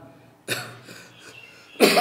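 A person coughing twice close to the microphone: a short cough about half a second in, and a louder one near the end.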